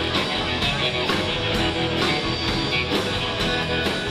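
Live rock band playing a stretch without vocals: electric guitar over a drum kit keeping about two beats a second.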